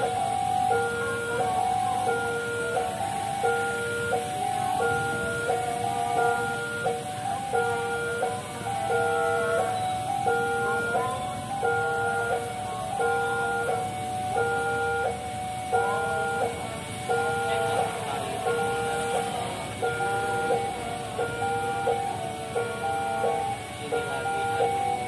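Railway level-crossing warning alarm sounding: an electronic chime repeating two tones alternating low and high, with a higher short beep about every 0.7 s, the signal that a train is approaching. Faint road traffic runs beneath it.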